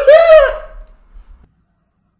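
A loud, high, drawn-out vocal cry from a person, rising then falling in pitch, which fades within the first second and drops to dead silence.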